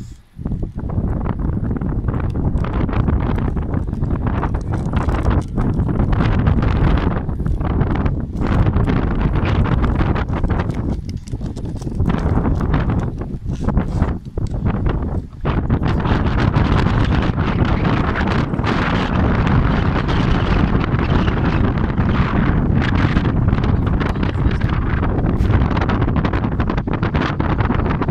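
Strong wind buffeting the microphone: a loud, steady rumble with a few brief lulls.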